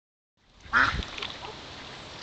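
A call duck quacking: one loud quack about three-quarters of a second in, then a fainter call about half a second later.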